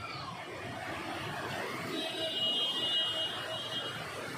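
Overflow floodwater from a full lake rushing and churning through a concrete spillway channel, a steady rushing noise. About two seconds in, a high steady tone sounds for nearly two seconds over it.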